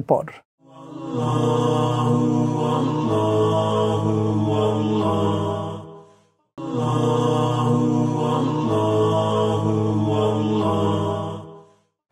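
Short music sting of sustained, chant-like chords, played twice in a row, each time about five seconds long with a brief silent gap between.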